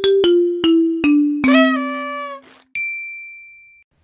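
Short intro jingle: a run of short notes stepping down in pitch, about three a second, ending in a longer held note about one and a half seconds in, then a single steady high beep lasting about a second near the end.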